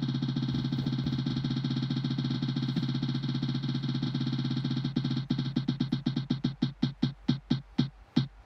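Online spin-the-wheel app's tick sound: rapid, pitched electronic ticks as the wheel spins. About five seconds in they begin to space out, slowing to a few ticks a second as the wheel decelerates toward a stop.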